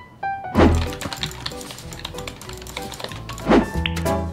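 Background music for a segment title: a few short high tones, then a deep hit about half a second in that starts a beat, with a falling swoop on that hit and another just before the end.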